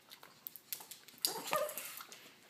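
A pug gives a brief high whine, begging for food, in the second half; a few light clicks come before it.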